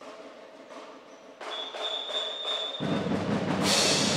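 A school percussion band (banda rudimentar) starts playing, with light percussion strikes at first and a high steady tone held for over a second. Deep drums come in heavily near three seconds, and a bright crash follows just before the end.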